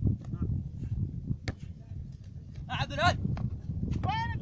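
A man's short shout or call about three seconds in, over a steady low rumbling background noise, with a sharp knock about halfway through.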